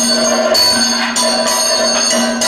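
Kathakali accompaniment: bell-metal percussion struck again and again in an uneven rhythm, each strike ringing on, over a steady held drone.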